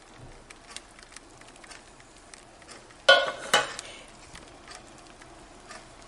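Canned pineapple chunks tipped from a metal can into a plastic-lined slow cooker: faint crinkling of the plastic liner and small wet plops and clicks, with one louder clatter of the can about three seconds in.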